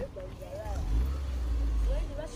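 Outdoor ambience with faint, distant voices and a low rumble that grows louder in the second half.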